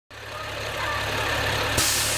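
A school bus's diesel engine idling steadily as the sound fades in. Near the end a click is followed by a sudden sharp hiss of air.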